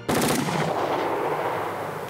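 A rapid burst of machine-gun fire, a dense run of sharp cracks with a noisy echoing tail that starts to fade near the end.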